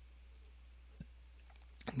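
A single computer mouse click about a second in, over a low steady electrical hum; a man's voice begins right at the end.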